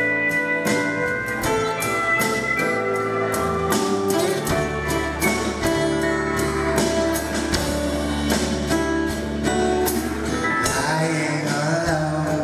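Live country band playing: a drum kit keeps a steady beat under electric bass, acoustic guitar, keyboards and pedal steel guitar.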